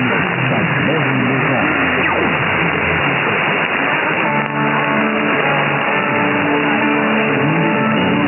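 Weak, distant AM medium-wave broadcast heard through static and band noise in a narrow sideband passband. A voice is heard for the first few seconds, then music with long held notes begins about three seconds in.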